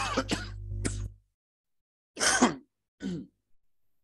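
A man's voice in three short bursts, like throat clearing or brief grunts. The first sits over a low rumble that stops about a second in.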